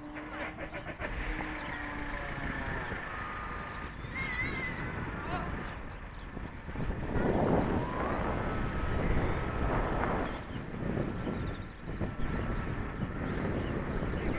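Radio-controlled model airplane's motor droning in flight, its pitch gliding up about seven seconds in and then holding steady, loudest for a few seconds after that.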